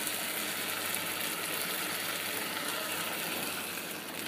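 Pangas fish curry with bean seeds sizzling and simmering steadily in a wok.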